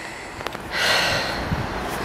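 A long, breathy exhale, a sigh, starting about two-thirds of a second in, with a faint click just before it.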